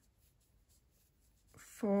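Faint, soft scratching and rubbing of a crochet hook drawing cotton yarn through stitches.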